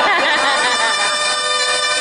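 Live saxophone duet holding a long sustained note, with many audience voices cheering and whooping over it.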